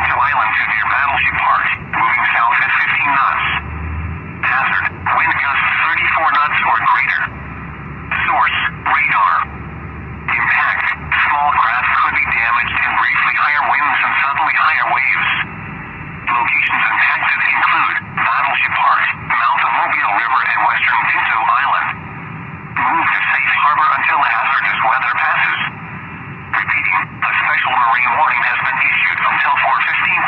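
A voice reading a weather broadcast over a narrow, radio-like channel, in phrases broken by short pauses.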